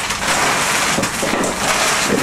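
A shopping bag rustling and crinkling continuously as it is turned upside down and shaken, with shoes tumbling out of it onto the floor with a few soft knocks.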